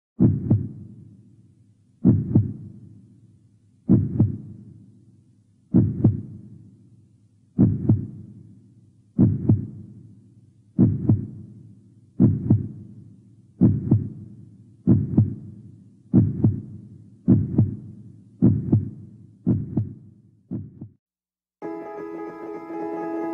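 Heartbeat sound effect: deep double thumps that start about two seconds apart and speed up steadily to about one a second, stopping shortly before the end.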